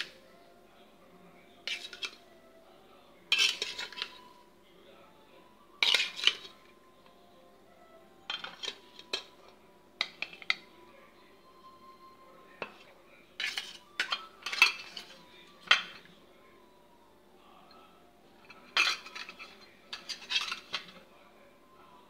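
A spoon clinking and scraping against a ceramic bowl in short bursts every two or three seconds, stirring diced beetroot in its juice.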